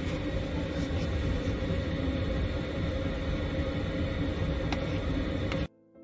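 A steady low rumble with a constant hum running through it, cut off suddenly near the end.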